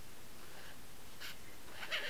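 Quiet room tone with a faint, short scratchy stroke of a felt-tip marker on paper about a second in.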